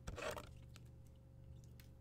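A brief rustle, then a few faint clicks over a steady low hum.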